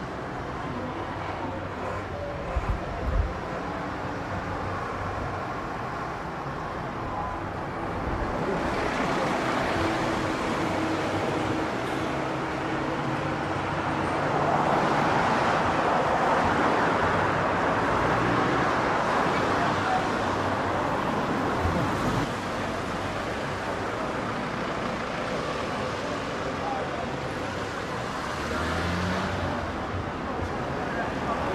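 Road traffic ambience, a steady rush of passing vehicles that grows louder through the middle, with two short low thumps about three seconds in.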